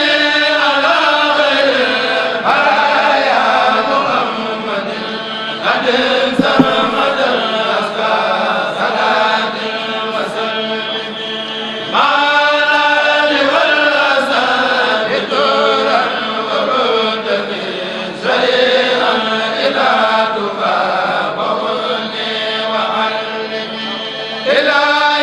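A Mouride kourel, a group of men, chanting a xassida together through microphones, in long melodic phrases that begin afresh about every six seconds.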